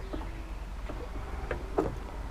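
Quiet outdoor background picked up by a moving body-worn camera: a steady low rumble, with a few faint short knocks and a brief faint voice-like sound near the end.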